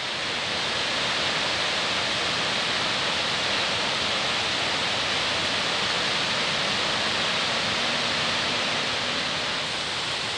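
Mountain stream cascading over boulders in small falls: a steady rush of water that eases slightly near the end.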